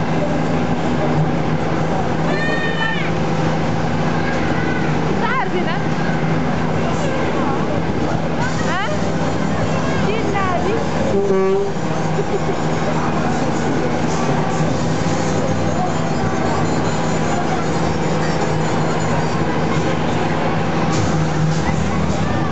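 Fairground Meteor spin ride running: a steady machinery drone, with riders' high shrieks rising and falling a few times.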